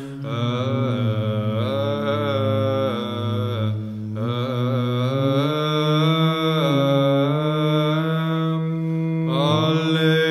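Orthodox church chant sung unaccompanied: a slow melodic line over a steadily held low drone note, which steps up to a higher pitch about halfway through.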